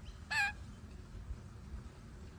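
A single short bird call, about a fifth of a second long, a quarter of a second in, with a wavering pitch.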